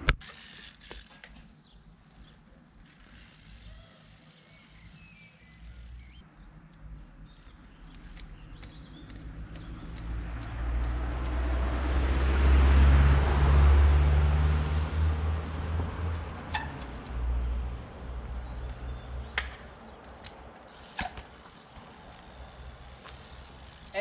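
A motor vehicle passing on the road: a low engine hum and tyre noise swell to a peak about halfway through, then fade away. A few sharp knocks follow in the second half.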